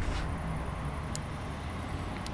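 Steady low outdoor background rumble, with a couple of faint ticks.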